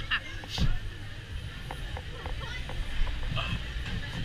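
Wild mouse roller coaster car rolling slowly into the station: a steady low rumble with scattered clunks and clicks from the track, against indistinct crowd chatter.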